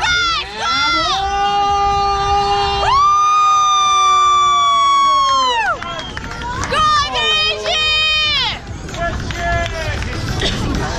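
A voice shouting long drawn-out calls. There are two held notes between about one and six seconds in, each falling away at its end, then shorter wavering calls near the end.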